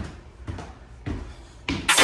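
A few soft footsteps on a staircase, about a half second apart, then electronic music cuts in loudly near the end.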